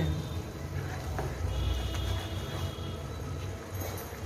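Green peas in tomato masala cooking in a pan on a gas stove: a low steady rumble with faint sizzling.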